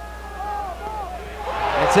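Stadium crowd noise swelling over the last half-second as a pass is intercepted, with a commentator's voice coming in at the end.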